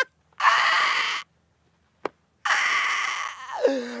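A man laughing hard: two long, breathy, wheezing laughs with a falling voiced tail near the end.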